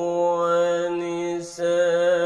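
A man chanting Qur'an recitation in maqam Bayyati, holding one long, nearly level note with a slight waver. The voice breaks off briefly about one and a half seconds in, then resumes with an ornamented, wavering line.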